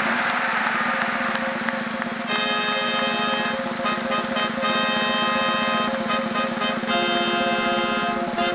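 A large audience applauding while music comes in; from about two seconds in, loud sustained chords play over the clapping.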